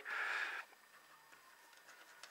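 A short soft hiss, then near silence: quiet room tone with a few faint ticks.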